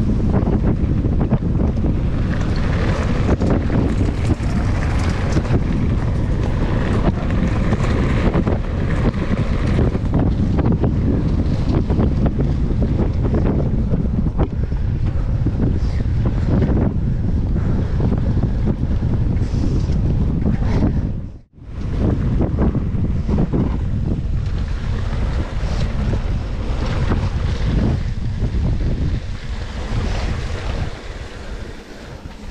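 Wind buffeting the camera microphone on a mountain bike riding fast over dirt and gravel trail, mixed with tyre noise and the rattle of the bike on rough ground. The sound cuts out for a moment about two-thirds of the way through.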